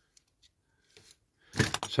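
A few faint clicks and taps as small die-cast metal toy vehicles are handled and set down on a cutting mat; a man's speech starts near the end.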